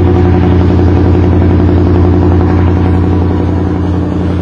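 An engine running steadily with a low, even drone.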